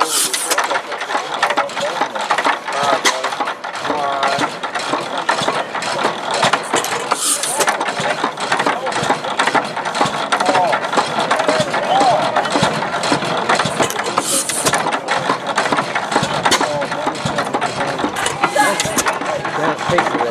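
Economy 4 HP hit-and-miss gas engine running, with a steady clatter of clicks and knocks from its moving parts.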